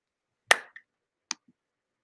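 Two sharp clicks, the first and louder about half a second in, the second shorter and fainter less than a second later.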